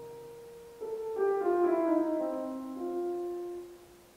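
Grand piano playing a solo introduction: a held note fading, then a falling run of notes starting about a second in, settling on a lower held note that dies away near the end.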